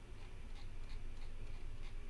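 Faint, regular ticking of a computer mouse scroll wheel, about three ticks a second, over a low steady background hum.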